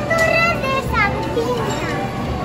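A young girl's high-pitched voice in short utterances, the pitch gliding up and down, over background music.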